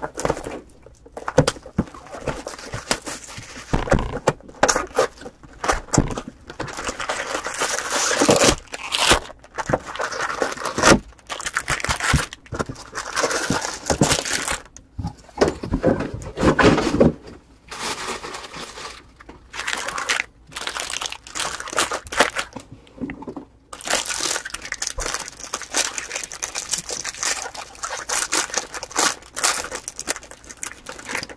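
Plastic wrapping on a box of baseball card packs being torn and crumpled, then the packs' foil wrappers crinkling and tearing as they are ripped open. The sound is a continuous run of irregular rustles and sharp crackles, with brief pauses between handlings.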